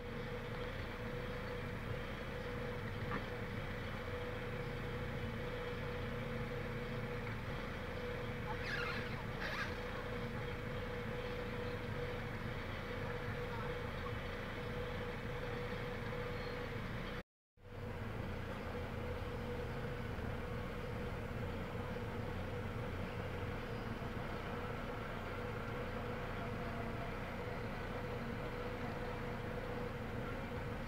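Petrol car engine idling rough and misfiring, heard from inside the cabin as a steady running hum. The misfire comes from a spark plug boot that was not seated properly, so the spark was arcing through the rubber boot to the engine body. The sound drops out for a moment a little past halfway.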